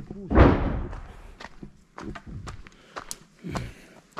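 A heavy thump about half a second in, followed by scattered light knocks and clicks.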